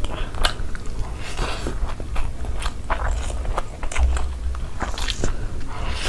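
Close-miked chewing and biting of a mouthful of food eaten by hand, with many short sharp mouth clicks throughout.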